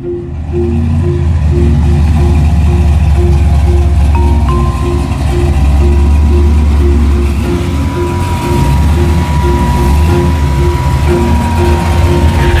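Background music with a repeating marimba-like figure over a car engine's steady low rumble as a Plymouth Fury III rolls slowly by.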